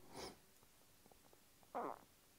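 Near silence broken by two brief, soft breath sounds from a man: one about a quarter second in, and a short low hum or voiced exhale near the end.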